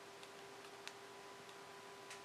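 Near silence: a faint steady hum with a few soft, irregular ticks, the clearest a little under a second in.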